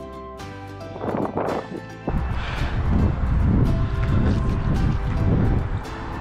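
Background music with steady notes. About two seconds in, loud wind buffeting on the microphone starts suddenly and goes on under the music.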